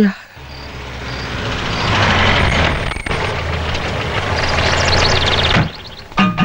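A car drawing up: its engine grows louder over the first two seconds, runs on steadily, and stops suddenly shortly before the end.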